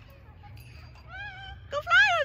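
Parrots calling in flight: a short rising call about a second in, then louder calls that slide down in pitch near the end, over a faint low rumble.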